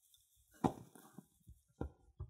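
Swiss Army knife blade being worked into the crack of a padlock to pry off its pin retaining plate: a sharp metal click a little over half a second in, a few faint ticks, then a second click near the end.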